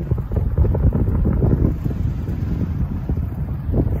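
Wind buffeting a phone's microphone: a loud, gusting low rumble.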